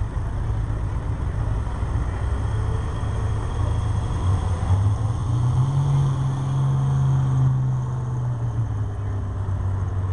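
Pulling tractor's engine running off load at low speed, revving up about five seconds in and easing back down about three seconds later.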